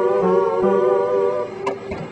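A single held musical note, wavering slightly, that stops just before the end; a lower tone pulses about four times a second beneath it during the first second.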